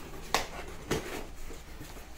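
Handling of a cardboard subscription box: one sharp click about a third of a second in, then a couple of faint taps.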